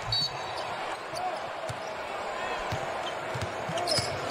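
A basketball being dribbled on a hardwood court, a few separate thumps, with brief sneaker squeaks scattered through.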